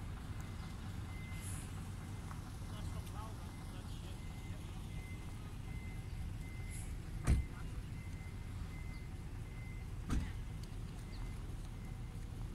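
Steady low outdoor rumble at a riverside port, with two short thumps about seven and ten seconds in.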